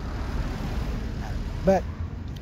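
Steady rumble and hiss of road traffic.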